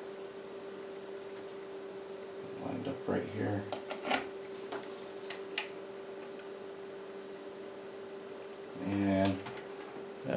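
A few light clicks and knocks as the tuning knob is pushed back onto the radio's encoder shaft and the small transceiver is handled, over a steady hum. A man's voice murmurs briefly about three seconds in and again near the end.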